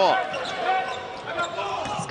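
Basketball bouncing on a hardwood court during live play, with the echo of a large arena.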